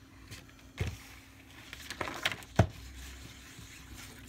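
Clothes iron knocking and sliding over a paper sheet laid on a canvas panel, with paper rustling; three short knocks, the loudest a little after halfway.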